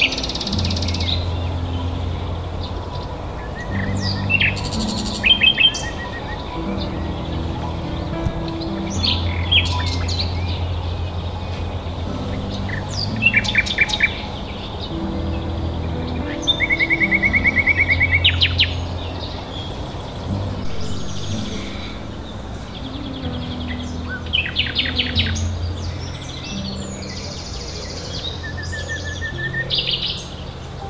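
A songbird singing in short, varied phrases with rapid trills, the longest and loudest trill about two-thirds of the way through, over soft background music with sustained low notes.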